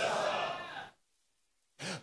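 A man's breathy exhale trailing off after a shouted question, fading out within the first second, then near silence, with a short faint breath just before he speaks again.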